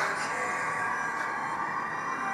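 Television show audio played back: a steady wash of audience cheering over sustained stage music, with a few held tones and no clear beat.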